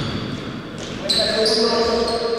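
Basketball play in an echoing gym hall: about a second in, a drawn-out shouted call, held at one pitch for about a second, over the hall's noise.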